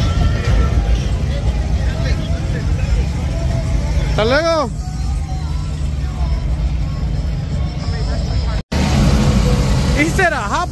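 Busy street ambience: a steady low rumble of idling car engines under music and scattered voices, with one loud call or shout about four seconds in. A brief drop-out occurs near the end.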